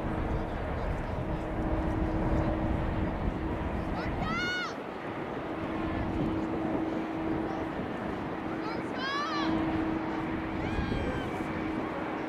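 Outdoor youth football match ambience: a low wind rumble on the microphone with a steady low hum that comes and goes. Two short, high-pitched shouts ring out from the field about four and nine seconds in, with a fainter call near the end.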